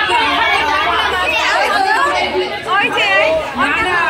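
Several women's voices talking over one another: overlapping chatter in a crowd.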